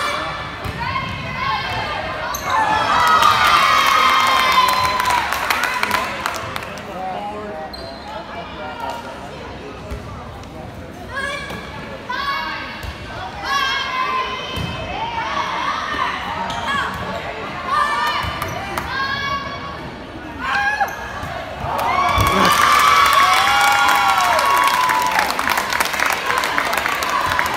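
Girls' volleyball rally in a gymnasium: the ball struck with short thumps while players call out and spectators shout. Cheering swells about two to six seconds in and again near the end, when the point is won.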